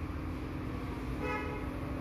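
A single short vehicle horn toot about a second in, over a steady low hum and rumble in the room.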